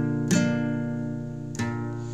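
Acoustic guitar strumming chords in an acoustic song, with two strums, one just after the start and one past the middle, each left to ring.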